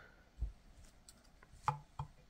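A soft low thump about half a second in, then a sharp click near the end as small 9V batteries are set down on the plastic platform of a kitchen scale.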